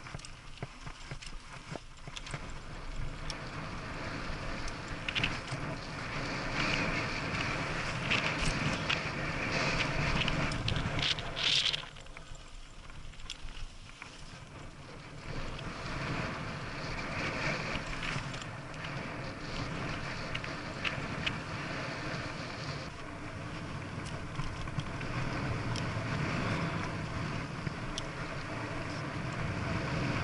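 Mountain bike riding a dirt trail: a steady rush of tyre and wind noise with frequent rattles and knocks from the bike over bumps, easing off for a few seconds partway through.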